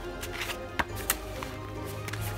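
Background music with steady held tones, overlaid by a few short taps and rustles of paper as a card is slid into a paper envelope and the flap is folded shut.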